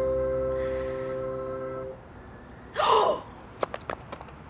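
Soft background music holding a sustained chord stops about two seconds in. Near the end comes a young woman's short, startled gasp, the loudest sound, followed by a few light clicks.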